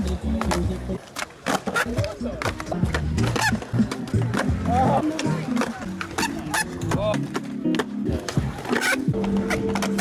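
Skateboard deck and wheels clacking repeatedly on concrete as flat-ground tricks are flipped and landed, with music and voices in the background.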